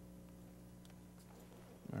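Quiet room tone with a steady low hum and a few faint ticks; a man's voice begins a word at the very end.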